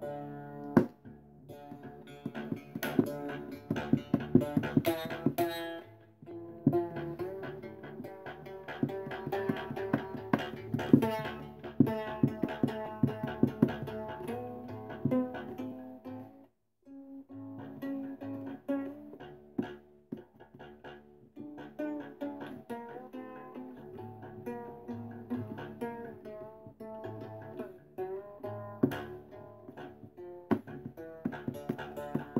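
Homemade three-string fretless box instrument, shamisen-like with a thin chipboard body, plucked in quick runs of sharp notes over its drone strings. There is a brief stop about halfway, then the playing resumes.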